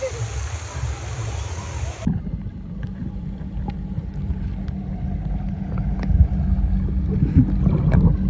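Water showering down onto a phone camera with a steady hiss; about two seconds in the camera goes underwater and the sound turns suddenly to a muffled low rumble with faint clicks.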